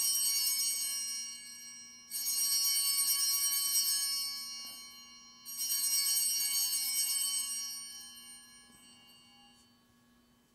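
Altar bells rung three times for the elevation of the chalice at the consecration, each ring a shaken cluster of small bells that rings and fades. The first ring is already sounding at the start, the second comes about two seconds in and the third about five and a half seconds in; the last dies away by about eight seconds.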